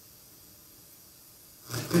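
A pause in a man's speech, with only faint room hiss; he starts speaking again near the end.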